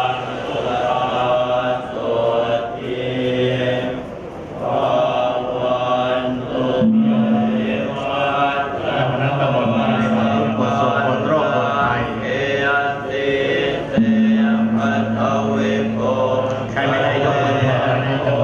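A group of Thai Buddhist monks chanting Pali verses in unison through microphones and loudspeakers, a continuous recitation with long notes held on one pitch.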